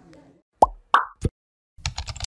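Three short, pitched plop sound effects about a third of a second apart, followed near the end by a quick cluster of clicks, as an animated outro graphic appears.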